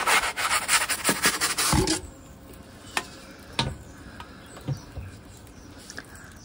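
Wooden pizza peel scraping and rubbing on the stone of a Roccbox pizza oven as the pizza is slid off it, a rasping rub for about two seconds that stops abruptly. A few faint knocks follow.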